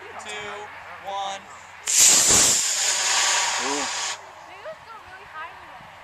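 Estes model rocket's black-powder motor igniting and lifting the rocket off the pad: a loud rushing hiss that starts suddenly about two seconds in, lasts about two seconds and cuts off sharply as the motor burns out.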